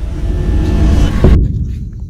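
A loud rushing, rumbling noise builds for over a second, peaks, then its hiss cuts off abruptly, leaving a deep rumble that fades away.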